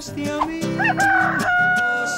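A singing voice gliding upward and then holding one long high note to close the song's phrase, over a musical accompaniment.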